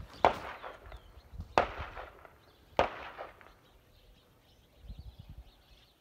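Three gunshots about a second and a quarter apart, each a sharp crack with a short trailing echo, from target shooting at a tire.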